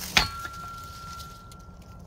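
A Cold Steel BMFDS steel shovel is swung into a sapling. There is one sharp chopping hit just after the start, then the steel blade rings with one steady high tone.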